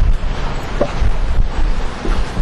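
Wind buffeting an outdoor microphone: a loud, gusting low rumble over street noise.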